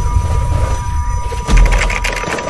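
Sound effects of an animated outro: a low rumble under a steady high ringing tone, with a sharp hit about one and a half seconds in.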